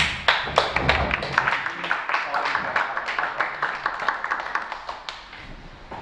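A small audience applauding, dense irregular claps that thin out and die away about five seconds in.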